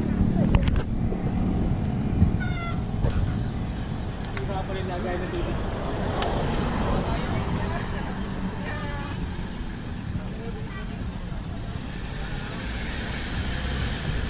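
Wind rumbling on a bicycle-mounted camera microphone while riding, with passing road traffic and faint, scattered voices of other cyclists.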